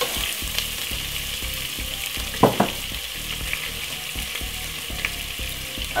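Chopped onion, garlic and bell peppers sizzling steadily in olive oil and butter in a pot, with one short louder sound about two and a half seconds in.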